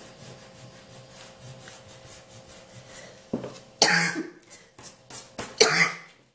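A woman's coughing fit: several harsh coughs in the second half, the loudest about four seconds in and just before the end.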